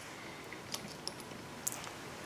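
A few light clicks of small metal GM HEI distributor parts (the magnetic shield and pole piece) being handled, over quiet room tone.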